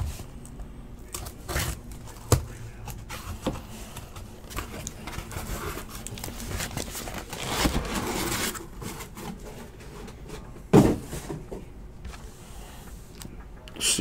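Trading-card box and pack being handled and opened: scattered plastic crinkling, scraping and tearing of the wrapper, with a short rustling stretch past the middle. A single sharp knock about eleven seconds in is the loudest sound.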